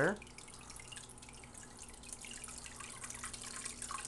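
Aquarium filter outflow pouring into the tank water: a steady splashing trickle with fine droplet sounds. The filter is turned up from low to a higher flow and gets slightly louder near the end, with a low steady hum beneath.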